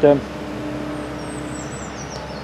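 Steady background drone of distant motor traffic, with a steady low hum that stops shortly before the end. A small bird sings thin, high whistled notes in the second half.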